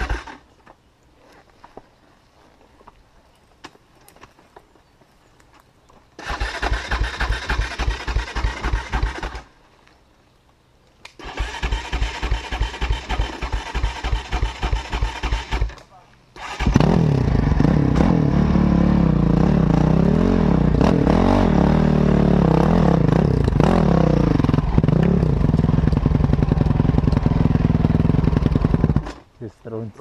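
Enduro motorcycle engine being cranked in two bursts that do not catch, then starting about two-thirds of the way in and running loudly with the throttle blipped up and down, before cutting off abruptly near the end. The first few seconds are quiet.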